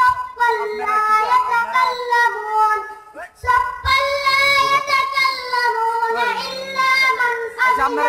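A young boy reciting the Quran (tilawat) in a melodic chant, holding long drawn-out notes, with a brief pause for breath about three seconds in.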